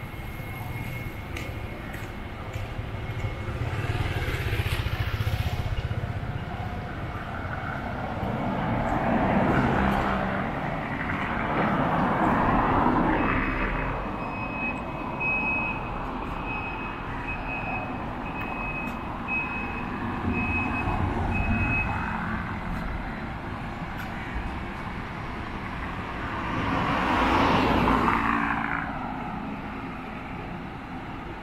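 Road traffic on a wide city street: about five vehicles pass one after another, each swelling up and fading away over a few seconds over a steady background hum.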